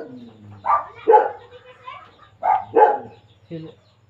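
A dog barking: two pairs of short barks, the second pair about a second and a half after the first.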